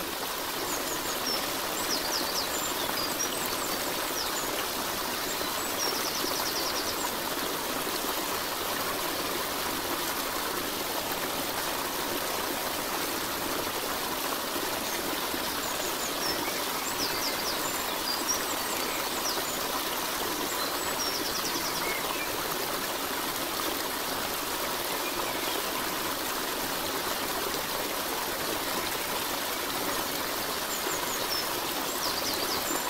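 Steady rushing of running stream water, with a few brief high chirps over it; the same chirps come again about fifteen seconds later, as in a looped recording.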